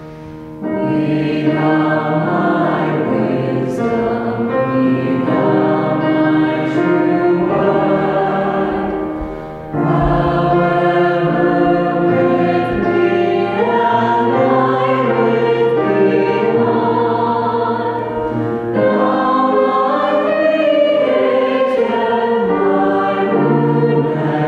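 A hymn sung by many voices together, led by a young woman's voice, with piano accompaniment. It is sung in long held phrases with brief breaks just after the start, about ten seconds in and about nineteen seconds in.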